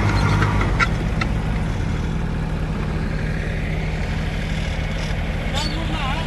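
Small tractor's diesel engine running steadily at low revs, a little quieter after about the first second.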